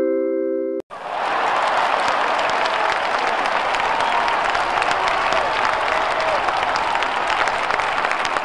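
The held tones of a mallet-struck chime cut off abruptly under a second in, and then a crowd applauds steadily.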